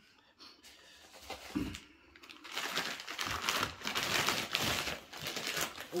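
Newspaper packing crumpling and rustling as a bottle is unwrapped from it, densest through the second half. A soft thump comes about one and a half seconds in.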